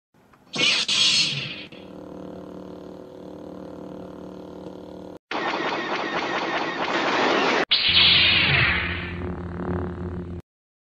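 An edited soundtrack of short music and sound-effect clips, cut abruptly one into the next. A loud hissing burst comes about half a second in, then a steady held chord, a noisy rushing stretch from about five seconds, and a last loud clip with held low notes.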